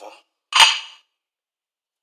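A single sharp clack about half a second in, the loudest sound here, dying away within half a second: a hard knock as the ceramic dinner plate is lifted and handled.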